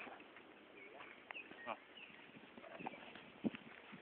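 Faint scattered rustling and light footsteps through grass and undergrowth.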